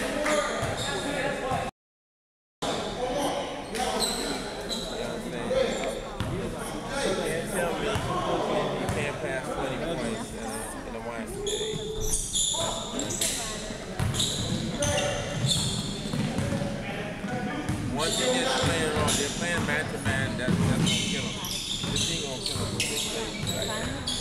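Basketball bouncing on a hardwood gym floor amid voices, with repeated short knocks echoing in a large gymnasium. The audio cuts out completely for about a second, roughly two seconds in.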